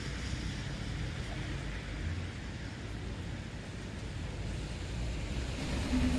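Steady traffic noise of cars passing on a wet city street.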